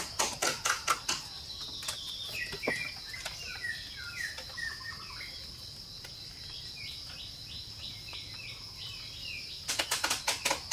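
A quick run of sharp knocks, several a second, in the first second and again near the end, over a steady high-pitched insect drone, with birds chirping short falling notes in between.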